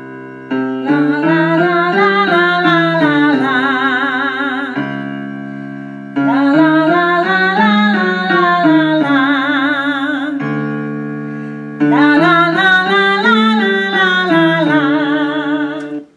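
Vocal warm-up piano track playing a scale exercise, with a woman singing the notes on 'la'. It goes three times: a chord, then the voice steps up and back down the scale with the piano and ends on a held note with vibrato.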